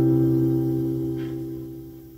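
Acoustic guitar's final chord ringing out and fading away, heard through a TV's speakers.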